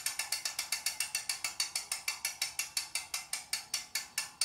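A ratchet clicking steadily, sharp high-pitched clicks at about seven a second.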